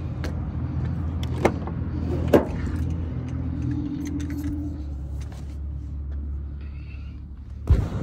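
A Chevrolet pickup's driver door being handled: sharp latch and handle clicks about one and a half and two and a half seconds in as it opens, then heavy thuds near the end as it is shut, over a steady low engine hum.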